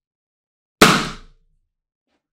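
A latex party balloon bursting: a single loud bang about a second in, dying away within half a second.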